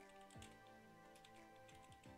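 Faint typing on a computer keyboard: a quick scatter of soft key clicks over faint steady tones.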